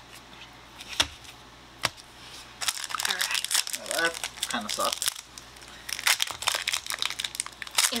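Foil Pokémon booster-pack wrapper crinkling and tearing as it is ripped open and the cards are pulled out, after two sharp clicks in the first two seconds.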